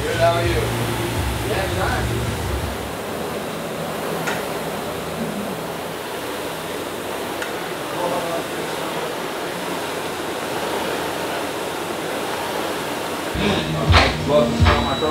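Steady fan-like rushing noise, with a low hum that stops about three seconds in and a couple of light clicks.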